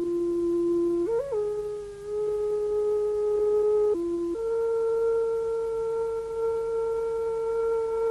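Slow theme music from a single pure-toned melodic instrument holding long notes. It bends briefly upward about a second in, dips just before the middle, then holds one higher note through the second half.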